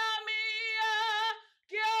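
A woman singing unaccompanied in a high voice, holding long notes with vibrato. She breaks off about one and a half seconds in and takes up the note again just before the end.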